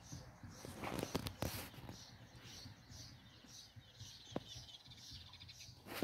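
Faint songbird chirping outdoors: a short high chirp repeated steadily, a couple of times a second, with a few sharp clicks along the way.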